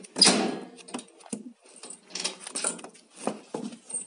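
Short clicks and rustles of objects being handled, with one louder knock or rustle just after the start and faint voices in the room.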